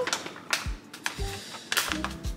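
Kraft paper matcha pouch crinkling and crackling as it is pulled open by hand, in a few sharp bursts, the loudest near the end, over background music.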